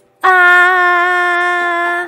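A girl's voice holding one long, steady 'aaah' with her mouth wide open, the sound a patient makes for a doctor looking into her mouth. It starts a moment in and holds at an even pitch for nearly two seconds.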